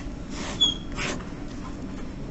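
Felt-tip marker drawn across paper in two quick strokes, with a brief high squeak during the first.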